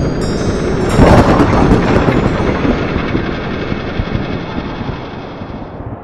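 Dramatic opening sound effect: a dense rumble with high ringing chime tones, a sudden boom about a second in, then a long fade that is quietest near the end.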